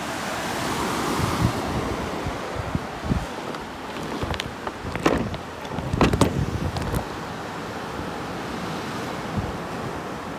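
Surf breaking on a beach, with wind buffeting the microphone. A few brief knocks and rustles come through in the middle.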